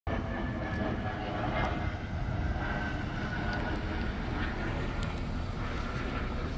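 Steady low rumble of outdoor traffic noise, with no distinct events standing out.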